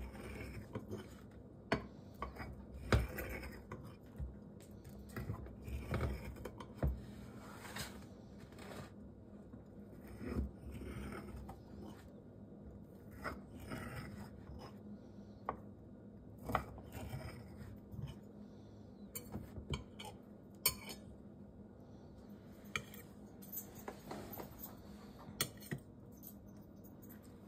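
A spatula cutting and scraping through cornbread in a glass baking dish: scattered short clicks and scrapes against the glass over a faint steady hum, with a piece set on a plate near the end.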